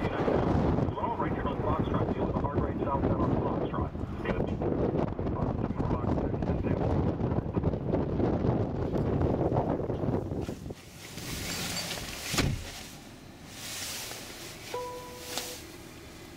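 Wind buffeting the microphone with a low rumble for about ten seconds, then a quieter stretch with a sharp click and a short electronic beep near the end.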